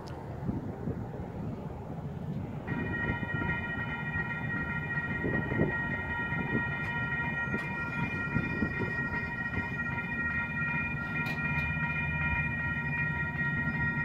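Train approaching along the line: a low rumble that grows stronger over the last few seconds. A steady high ringing of several tones comes in about three seconds in and holds.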